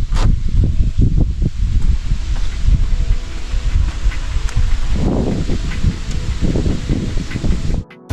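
Wind buffeting the microphone in uneven gusts, strongest about five seconds in, with faint background music underneath.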